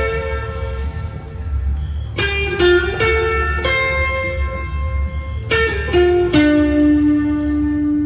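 Electric guitar in 444 Hz tuning playing a slow, clean melody over a looped layer with a steady low bass underneath. A few notes are plucked about two seconds in and again past the halfway point, and the last note is held ringing to the end.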